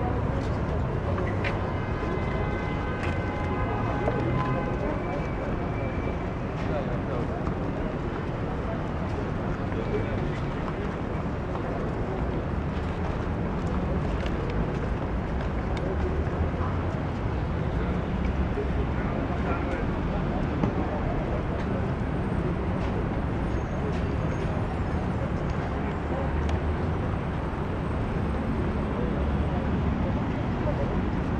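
Steady outdoor background noise with a low rumble and indistinct voices of people around.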